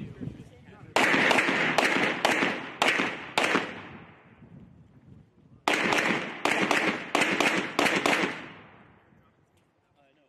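Pistol shots fired in two quick strings of about six rounds each, a couple of seconds apart, each crack trailing off in a ringing echo.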